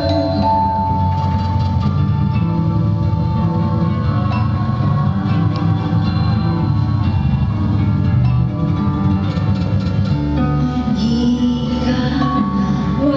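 Live experimental electronic music: a dense, steady low drone with sustained held tones and bell-like chiming over it. A voice comes back in near the end.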